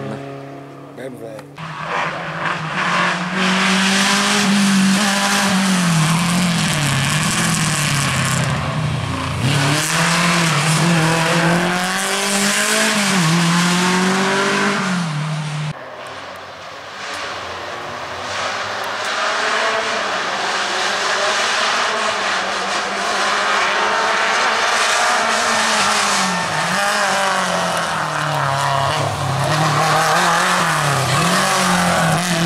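Lada VAZ 2105 rally car's four-cylinder engine revving hard, its pitch rising and falling again and again as it is driven and shifted through the gears. The sound cuts abruptly about a second and a half in and again at about sixteen seconds.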